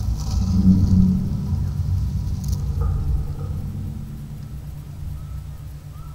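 Inline skate wheels rolling over brick paving: a low rumble that swells as the skaters pass close by about a second in, then fades as they roll away.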